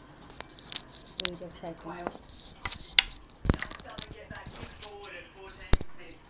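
Irregular clicks, light knocks and short rustles of things being handled close to the microphone, with two sharper knocks about three and a half seconds in and near the end.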